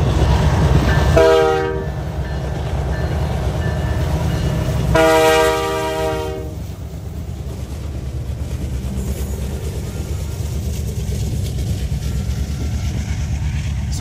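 Freight train passing at speed, its locomotives and rolling cars making a steady low rumble. The lead locomotive's multi-chime air horn sounds twice over it, a short blast about a second in and a longer one about five seconds in.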